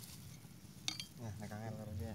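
A single sharp metallic clink about a second in, a hand tool striking the metal transmission housing of a hand tractor being dismantled, followed by a man's voice.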